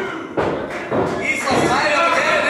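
Two thuds from the wrestling ring, about half a second in and again about a second in, with voices around them.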